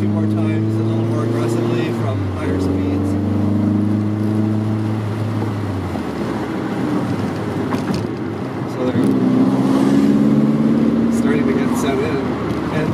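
In-cabin sound of a 1983 VW Rabbit GTI's engine pulling through the revs. The note breaks about two seconds in at a gear change, then climbs again. From about six seconds the engine note drops away under road noise, and it picks up again near the end.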